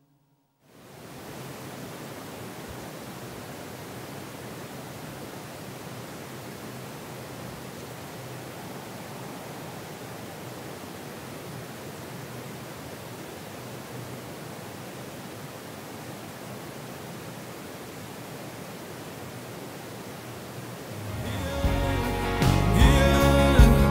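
Steady, even rushing noise with no tune or rhythm, after a moment of silence at the start. Music starts again near the end.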